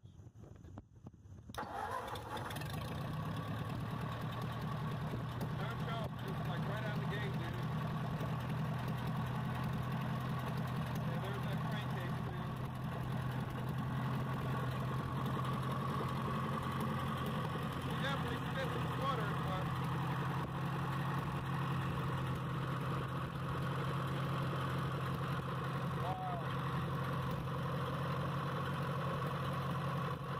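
Ford 8N tractor's four-cylinder flathead engine, running for the first time after years parked, starts about a second and a half in and then runs steadily.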